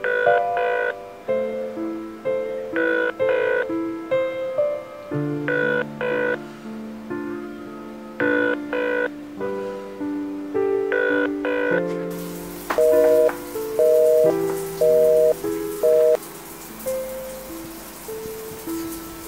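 Soft piano background music with a repeating pair of short, bright high tones about every two and a half seconds. In the second half these give way to a quicker run of short paired tones about once a second.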